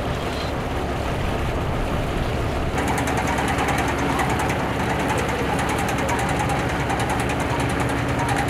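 Fishing boat's engine running steadily with a low hum. About three seconds in, a fast, even mechanical rattle joins it and stays.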